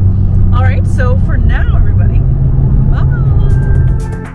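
Steady low road rumble inside a moving car's cabin; music begins near the end.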